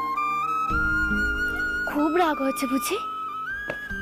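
Background music: a slow wind-instrument melody of long held notes stepping upward, over a low sustained drone.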